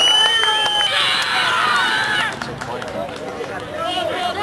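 A referee's whistle sounding one steady high note for about a second, then spectators cheering and shouting together before the voices fall away to chatter.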